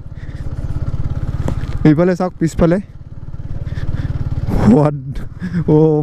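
Yamaha MT-15 motorcycle's 155 cc single-cylinder engine running under way, its note building over the first second, dipping briefly about three seconds in, then building again.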